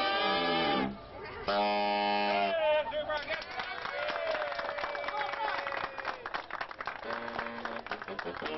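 A saxophone ensemble of alto, tenor and baritone saxophones playing short held chords: the first slides down in pitch, then a steady chord sounds about a second and a half in. After about three seconds the chords give way to a busy jumble of voices and scattered saxophone notes.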